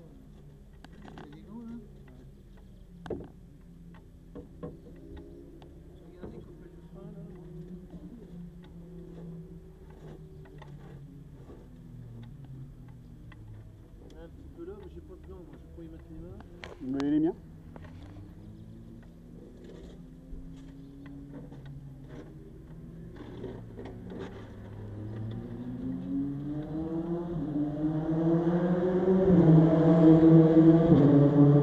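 Formula Renault 2.0 racing car's engine idling in a low, steady hum. Over the last few seconds an engine rises in pitch and grows much louder.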